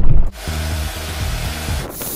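A loud, even hiss like spray or escaping gas sets in about a third of a second in and holds steady. Background music runs beneath it. A deep low rumble, the loudest part, comes at the very start.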